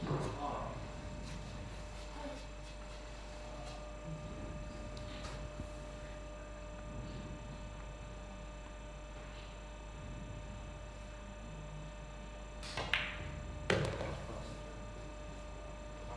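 Quiet room tone with a faint steady hum, then near the end a pool shot: a sharp click as the cue strikes the cue ball into the 5 ball, and a second knock under a second later as the ball drops into the side pocket.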